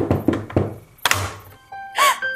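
A quick run of light, hollow knocks, about six or seven a second, that stops about half a second in, followed by a short hissing swish about a second in.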